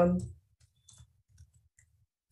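A few faint, short computer keyboard keystrokes, spaced about half a second apart.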